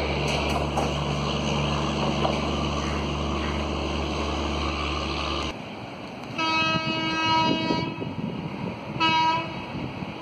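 A train rumbles steadily as it moves away across a river bridge, cut off suddenly about halfway through. Then a distant locomotive horn on the approaching Ernakulam–Howrah Antyodaya Express sounds twice: one blast of about a second and a half, then a short one.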